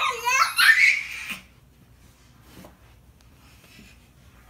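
Toddler squealing and laughing in high-pitched excited bursts for about the first second and a half, then only faint room sound.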